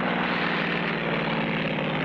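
Propeller airplane engine sound effect droning steadily, a low hum over a rushing noise.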